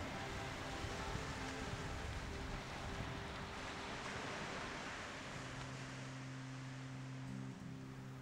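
Surf breaking and washing up on a beach: a steady rushing noise that eases a little in the second half.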